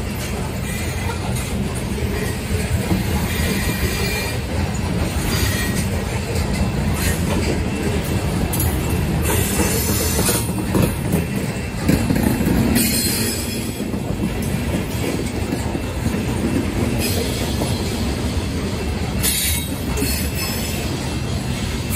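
Covered hopper cars of a grain train rolling past, a steady rumble of steel wheels on rail. Brief high wheel screeches cut in several times, around 9, 13 and 19 seconds in.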